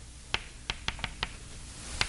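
Chalk tapping and clicking against a blackboard as a formula is written: a quick run of about five sharp clicks, then another near the end, over faint room hiss.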